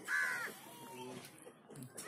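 A single short bird call right at the start, followed by quiet.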